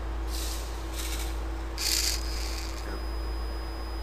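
Small geared servo motor (LEGO Mindstorms NXT type) under proportional position control, whirring in short hissy bursts as it swings to its 90-degree setpoint, the loudest burst about two seconds in. A thin high whine follows as it holds position, over a steady low hum.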